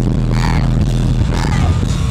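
Live rock band playing loud through an arena PA, heard from among the crowd: heavy drums and distorted guitars, with two short vocal phrases breaking in.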